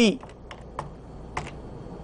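A few separate keystrokes on a computer keyboard, spaced irregularly, as a stock code is typed in to call up the next chart.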